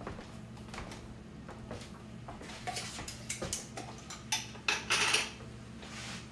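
Light clicks and clinks of a glass mason jar and its metal screw ring being handled and opened, with a few louder scrapes about four to five seconds in. A low steady hum runs underneath.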